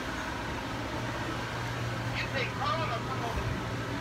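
Steady low hum of airliner ventilation during boarding, with faint background voices about two to three seconds in.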